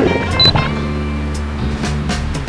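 Background music with low held notes and a short click about half a second in.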